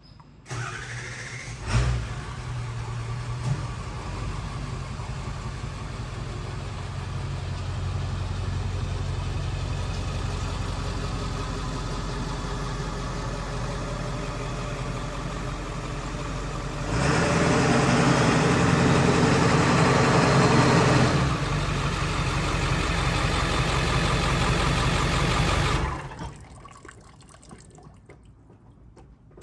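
Ford 7.3 L Power Stroke V8 turbo-diesel starting up within the first two seconds and running steadily. It gets louder for about four seconds as the truck is driven up close, then idles and is switched off, cutting out about two seconds before the end.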